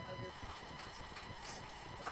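Faint room noise with a few light taps or clicks and a brief, quiet murmur of a voice.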